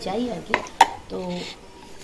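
Two sharp plastic clicks from a flip-top bottle being handled, about half a second and just under a second in, the second louder.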